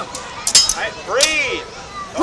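A couple of sharp clacks about half a second in as two practice swords strike each other, followed by shouting voices.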